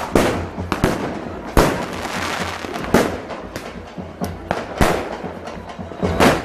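Aerial fireworks shells bursting overhead in an irregular series of bangs, the biggest about every second and a half, with smaller pops between them.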